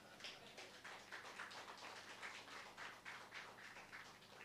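Faint, light applause from a few people clapping.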